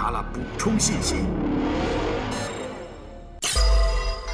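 Edited TV soundtrack with background music and a voice in the first second. A swelling whoosh fades out, then a sudden deep impact hit comes near the end as the scene changes.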